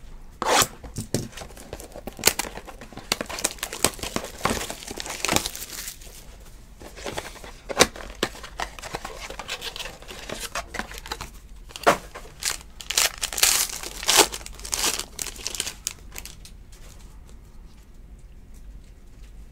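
A sealed trading-card box being torn open by hand and its wrapping crinkled: a run of irregular crinkles and rips that dies down near the end.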